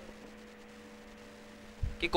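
Steady low electrical mains hum with a fainter higher tone over quiet room noise.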